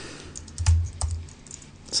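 Typing on a computer keyboard: a handful of irregular key clicks with a few low thumps.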